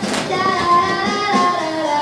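A high singing voice holding long notes that slide from one pitch to the next, with music behind it.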